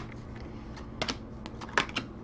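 Stiff glossy trading cards being flicked one at a time off a hand-held stack, giving a few sharp clicks spread across the two seconds.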